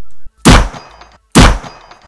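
Two handgun gunshot sound effects about a second apart, each a sharp, loud bang with a short ringing tail.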